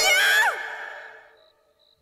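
A cartoon character's yell that falls in pitch and fades away within about half a second, over the tail of the score, then silence.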